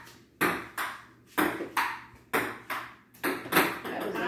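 Table tennis rally: the ball clicking sharply off the paddles and the table in a steady back-and-forth, about eight hits in pairs roughly a third of a second apart.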